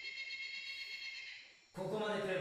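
Soft orchestral soundtrack music, a held high string chord fading away, then a character's voice from the episode begins near the end.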